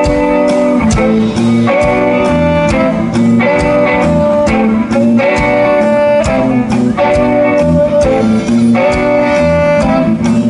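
A live band playing an instrumental passage: a steady drumbeat, electric bass and electric guitar, with saxophone holding long notes.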